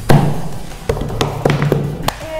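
Background music with a few sharp, unevenly spaced hand claps.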